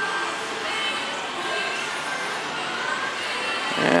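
Shop-floor ambience: a steady wash of indistinct background noise with faint snatches of music or distant voices.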